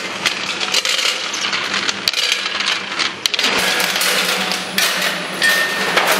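Manual combination weigher running: dense, irregular metallic clicking and clattering from its stainless-steel hoppers and the product falling through them, over a steady machine hum.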